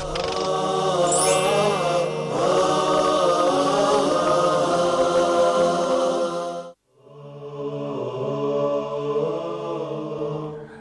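Chanted vocal jingle with long held notes. It cuts off about seven seconds in, and after a moment's silence a quieter chant starts.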